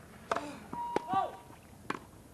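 Tennis rally on grass: a racket strikes the ball about a third of a second in, again about a second in, and once more near the end. Short voiced sounds follow the first two hits, and a brief beep sounds with the second.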